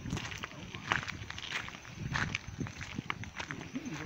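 Footsteps of people walking over rough ground, a run of irregular short steps, with brief faint voices in the background.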